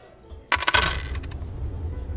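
A small handful of coins dropped onto a tabletop, a quick cluster of metallic clinks about half a second in that dies away within a second.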